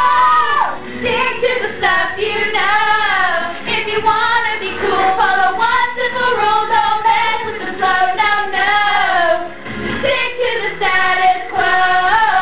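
Teenage girls singing a pop show tune along with its recorded backing track, in phrases with short breaths between them.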